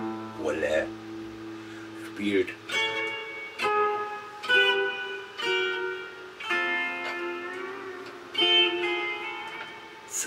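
Stratocaster-style electric guitar played as a slow melody of single notes, about seven of them, each left to ring for a second or two before the next.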